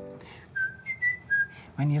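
Four short, high whistled notes, one after another.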